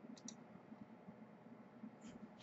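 Near silence: room tone, with a couple of faint computer mouse clicks a quarter of a second in.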